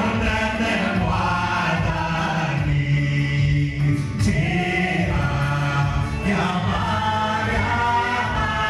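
Gospel choir singing, many voices holding long notes together, with one man's voice led through a microphone. The upper voices break off for a moment about three seconds in while a low note holds.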